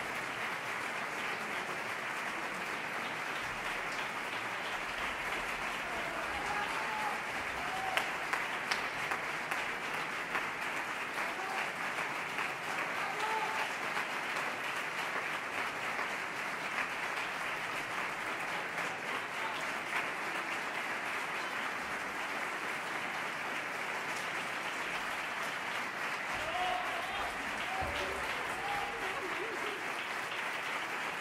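Live concert audience applauding steadily and at length at the end of a song, with a few voices calling out over the clapping.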